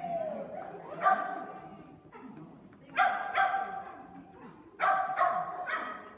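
A dog barking repeatedly: about six short, sharp barks, mostly in quick pairs, spread across a few seconds.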